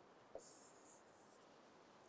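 Faint scratching of a pen sliding on a writing board as a box is drawn, with a small tick near the start.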